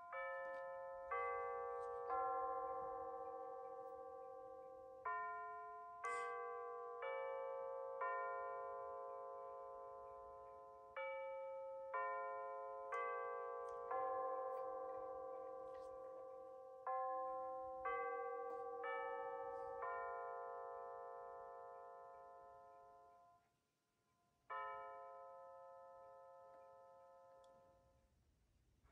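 Bulova C3542 quartz wall clock's speaker playing its hourly chime, electronic bell tones in four phrases of four notes each, then after a pause striking the hour only once when the hands stand at two o'clock: the chime count has fallen an hour behind the hands.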